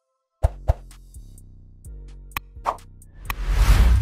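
Outro jingle for an animated like-subscribe-notify button graphic. Two sharp pops come about half a second in, then a few more clicks over a low music bed, and a swelling whoosh that is loudest just before the end.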